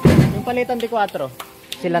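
One heavy thump, short with little ring, then people talking in Tagalog.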